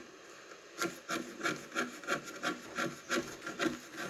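Olfaworks SG1-OD fixed-blade knife shaving a thin stick of wood into a fuzz stick: a quick series of short scraping strokes, about four a second, starting about a second in.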